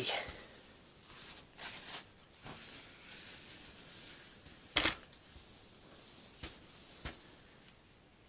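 Paper towel rubbing and rustling as a stainless steel work surface is wiped down, with a few light knocks and one sharp click a little before five seconds in. A faint steady high whine sits underneath.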